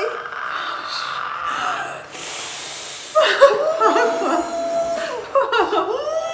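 Gasps and cries of shock from people pulling frozen, wet T-shirts on against bare skin. A held, strained cry gives way about two seconds in to a sharp hissing intake of breath, followed by long, wavering wails.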